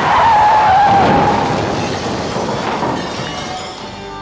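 Car tyres screeching in a skid, a falling squeal loudest in the first second, within a broad rush of crash noise that fades away over the next few seconds: a car crash.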